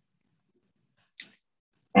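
Near silence in a pause of a talk, broken by one brief, faint click a little after a second in; a man's speech starts again right at the end.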